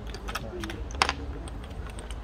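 Quick, irregular clacks of chess pieces being set down on the board and a chess clock being pressed during fast play, the sharpest click about a second in.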